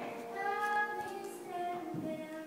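Music with a high voice singing held notes.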